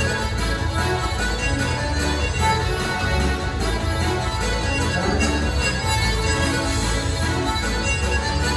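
Live Irish céilí band playing set-dance music with a steady, pulsing beat.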